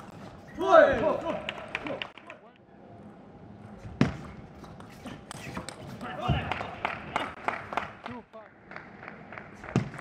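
A player's loud shout about a second in. Then a table tennis rally: the celluloid-type plastic ball clicks in quick succession off rubber-faced rackets and the table, with a couple of low thuds among the strokes.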